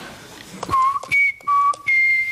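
Whistling: a few short, steady notes that jump between a lower and a higher pitch. Faint clicks of desk-phone keys being pressed come in between.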